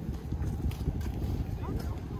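Wind rumbling on the microphone, with passers-by's voices and scattered footsteps on the pier walkway.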